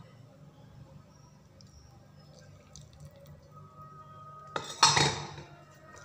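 Boiling water poured in a short splash into a bowl of tapioca flour and minced chicken about five seconds in, the loudest sound here. Before it, only a few faint clinks of the spoon and bowl.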